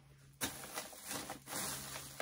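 Rustling handling noise: a run of soft scrapes and rustles as someone shifts on the floor and moves things about, starting about half a second in.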